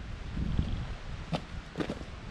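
Footsteps on a dirt trail, a few sharp steps in the second half, over low wind rumble on the microphone.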